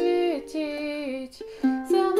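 Ukulele strummed in chords while a woman sings the song's verse. A held sung note bends and falls away about half a second in, then a fresh strum comes in near the end.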